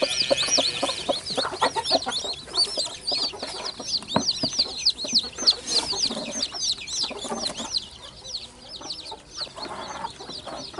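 A brood of newly hatched chicks peeping nonstop: many rapid, overlapping high-pitched peeps. There is a single knock about four seconds in.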